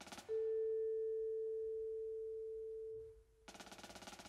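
A single sustained vibraphone note, close to a pure tone, struck sharply and ringing for about three seconds as it fades away. It is framed by short bursts of rapid stick strokes on a drum, one just before the note and another starting near the end.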